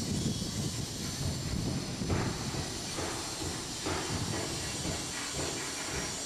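Outdoor ambience: an irregular low rumble under a steady hiss, with a few soft thumps about two, three and four seconds in.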